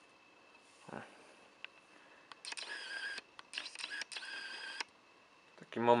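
A camera's lens motor whirring in two stretches of about a second each, after a soft knock about a second in.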